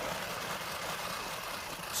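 Hand-cranked manual food processor with its grinding drum blade turning steadily, grinding walnuts into fine crumbs: an even, continuous grinding noise.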